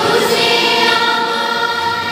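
A choir singing a slow sacred song, holding long notes.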